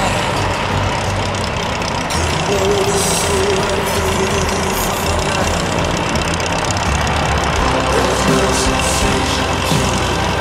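Cessna 140 light plane's piston engine and propeller running with a loud, steady drone, heard inside the small cabin.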